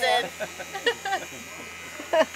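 Corded electric hair clippers buzzing steadily as they cut long hair close to the scalp around the ear.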